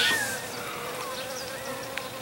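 Bees buzzing at flowering lavender, with one bee close by giving a single steady, even hum.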